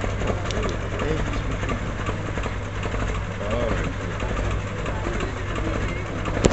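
Engine of a vintage open-cab truck running at low speed as it rolls slowly past, a steady low drone.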